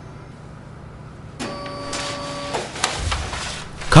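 Océ PlotWave 300 wide-format scanner's feed motor running with a steady whine for about a second, followed by two or three sharp clicks, as it drives a scanned original out at the front.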